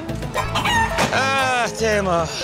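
A rooster crowing once, one long call starting about half a second in, over background music.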